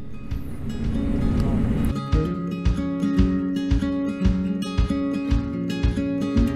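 Background music: an acoustic folk instrumental of plucked and strummed acoustic guitar, growing fuller and more rhythmic about two seconds in.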